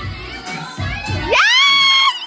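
A woman's high-pitched excited shriek: it slides sharply up about a second in and is held for under a second. It rises over background crowd noise.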